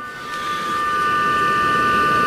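Running car engine heard from the open engine bay: a steady hiss with a thin high whine, growing louder over the first second and then holding even.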